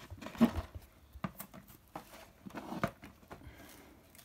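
Cardboard box and plastic blister packaging of a toy being handled and opened: a few light, scattered clicks and faint rustles.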